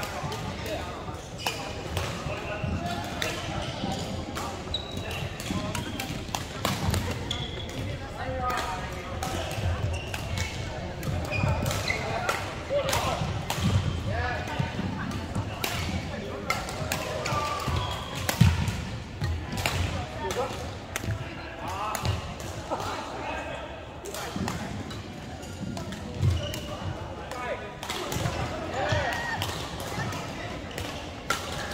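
Badminton rackets striking a shuttlecock, sharp hits repeating irregularly through rallies, the loudest about two-thirds of the way through, over the chatter of players in a large, echoing sports hall.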